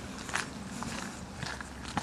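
Footsteps outdoors, a soft step about every half second, over a faint low rumble.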